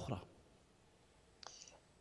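A man's voice trails off at the start, then a pause of near silence. About one and a half seconds in there is a faint click followed by a brief soft hiss.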